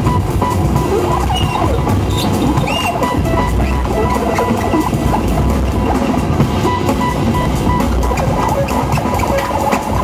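Live electronic music from modular synthesizers with a drum kit: a dense, noisy texture with a repeating high beep and scattered clicks.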